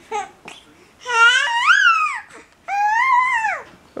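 A baby's voice in two long, high-pitched squeals that rise and fall in pitch, the first about a second in and the second just under a second after it ends.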